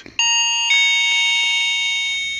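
Doorbell chime, two notes: the second note sounds about half a second after the first and rings out, fading slowly.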